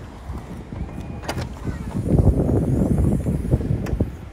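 Boot of a BMW 4 Series convertible being unlatched and opened, with a sharp click about a second in and another near the end, over low, uneven rumbling handling and wind noise on the microphone that grows louder in the second half.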